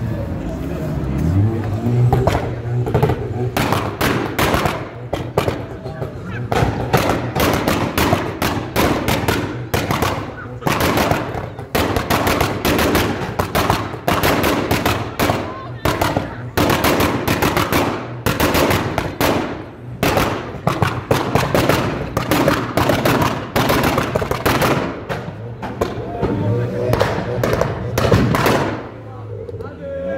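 Tuned hot hatch's exhaust popping and banging on the throttle, from an ECU pop-and-bang map. It gives rapid volleys of sharp cracks in bursts, with short breaks between them.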